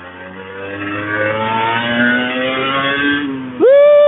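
Honda NSR 150 RR's two-stroke single-cylinder engine accelerating, its pitch rising steadily for about three seconds and then dropping away. Near the end a man lets out a loud "huu".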